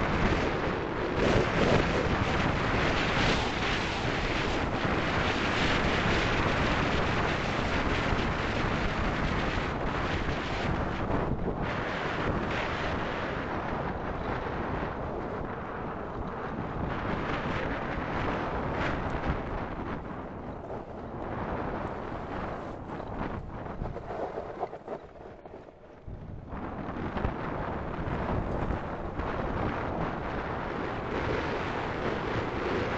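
Wind buffeting the microphone over the rumble of a gravity-powered kart's tyres rolling downhill on loose slate gravel. The noise dips briefly about five seconds before the end, then picks up again.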